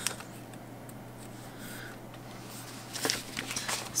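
Quiet handling of a paper planner by hand: a light click at the start and a short spurt of paper rustling about three seconds in, over a steady low hum.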